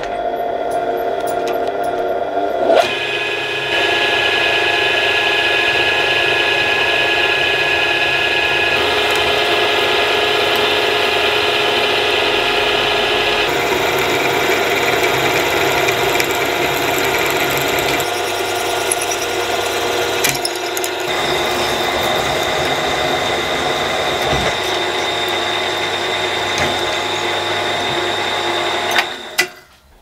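Milling machine spindle running with a twist drill cutting into a metal block: a steady mechanical whine over the noise of the cut. The sound changes abruptly a few times and stops just before the end.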